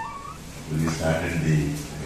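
A man speaking in short phrases into a microphone, after a short rising tone at the very start.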